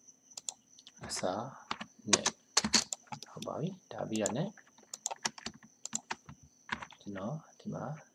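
Computer keyboard and mouse clicks: short separate taps scattered between bursts of talk, with a faint steady high whine underneath.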